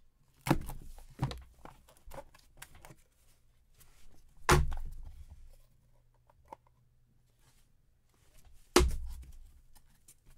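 Cardboard trading-card box being opened by hand: a handful of sudden scrapes and knocks as the box parts slide and are set down, the loudest about four and a half and nine seconds in, each trailing off over about a second.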